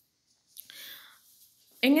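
A short, faint breath drawn in through the mouth, heard as a soft rush with no pitch, followed near the end by a voice starting to speak.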